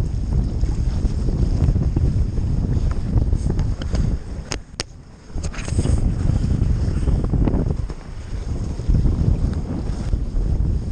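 Strong wind buffeting the microphone aboard a Hobie 20 sailing catamaran under way, a heavy low rumble. About halfway through it drops away for a moment and a few sharp clicks are heard before the wind noise returns.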